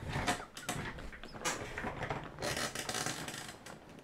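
Near-silent, breathy laughter: a few short wheezing gasps and exhales, without voiced laughing.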